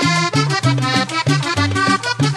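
Instrumental vallenato music: a button accordion playing over a bouncing bass line and percussion, with no singing.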